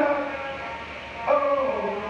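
Music with a sung melody: long held notes that step and slide between pitches.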